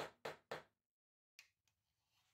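Homemade brass-faced hammer tapping fret wire into its slot in an ipe fretboard: quick light strikes, about four a second, three of them, each weaker than the last, then it stops. A faint click follows about halfway through.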